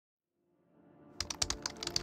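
Title-sequence sound design: silence, then a faint low tone swelling in under a quick, irregular run of sharp digital clicks like typing, starting just past a second in.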